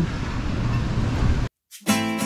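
Wind noise on the microphone with surf behind it for about a second and a half, then a sudden cut to silence and, just before the end, an acoustic guitar music track begins.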